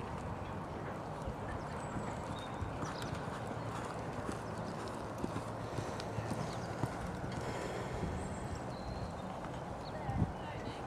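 Hoofbeats of a pony cantering on a sand arena surface, over a steady background of noise and a low hum.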